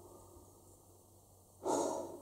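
Near-silent room tone, then near the end a man's short, audible breath lasting about half a second.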